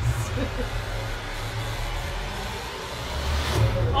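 Movie trailer sound design: a deep rumble under a hiss-like swell that builds toward the end, leading into the title card.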